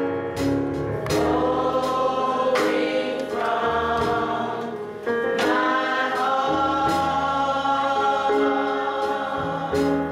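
Gospel choir singing in harmony, holding long chords that change every second or two.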